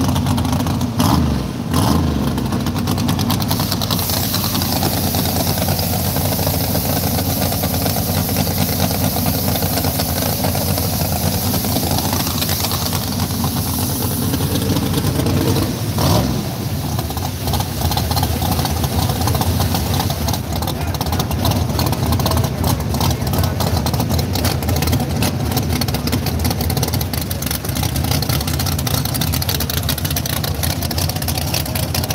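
Fox-body Ford Mustang drag car's engine running at idle, steady and loud, with brief rises and falls in pitch about twelve and sixteen seconds in.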